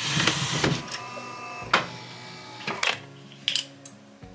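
Bean-to-cup coffee machine working: a rush of noise to begin, then mechanical whirring with a few sharp clicks.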